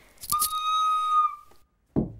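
Recorder blown through the nose: a breathy start, then one steady high note held for about a second before it fades away. A short knock follows near the end.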